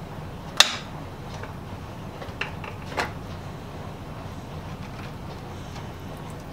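Clicks and knocks from small metal saw parts being handled around plastic tubes and a tray. One sharp click comes about half a second in and two fainter knocks come near the middle, over a steady low hum.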